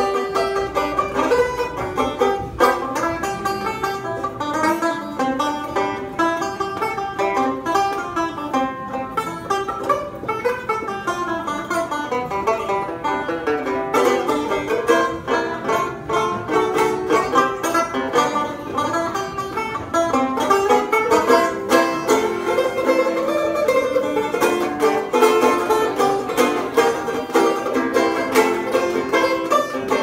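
Solo banjo playing an old-time tune, a steady stream of quick picked notes.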